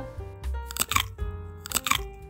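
Background music with held, plucked-sounding notes, and two short crunching noises: one about a second in and one near the end.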